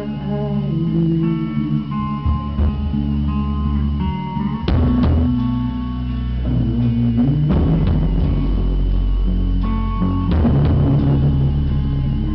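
Live rock band playing an instrumental passage, with electric guitar and bass holding sustained notes over a drum kit. Loud cymbal-and-drum hits land about four and a half seconds in, again near seven and a half and ten seconds, after which the band plays fuller.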